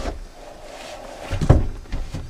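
A young lion's paws and body knocking against a car's side window and door: a knock at the start, then one heavy thump about a second and a half in.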